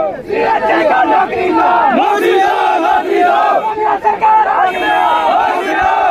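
A large crowd of men shouting in protest, many raised voices overlapping loudly without a break.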